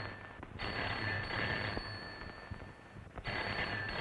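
Desk telephone bell ringing in repeated long rings: one ring ends just after the start, another runs from about half a second to two seconds in, and a third begins near the end.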